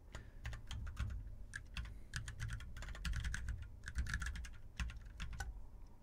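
Typing on a computer keyboard: a run of quick, irregular keystrokes with short pauses between bursts.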